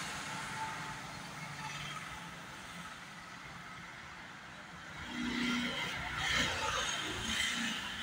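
Background noise of road traffic, steady and fairly quiet, growing louder and busier from about five seconds in.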